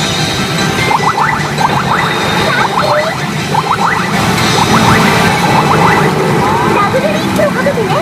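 A Newgin CR Yasei no Oukoku SUN pachinko machine playing its reach-sequence music and electronic sound effects, with a recorded character voice. Clusters of quick rising chirps run through most of it.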